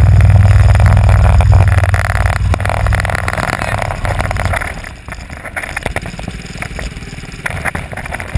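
Go-kart engine running loud under throttle, heard from on board the kart. About five seconds in the level drops as the throttle eases through a corner.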